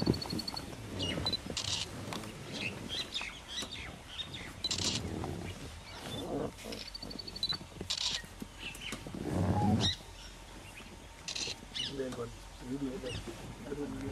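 Wild birds chirping, with rapid high trills near the start and again about seven seconds in, and short buzzy calls about every three seconds. A low rumble about nine to ten seconds in is the loudest sound.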